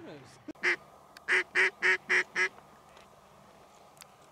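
Duck quacking: one quack, then a quick run of five evenly spaced quacks, about four a second.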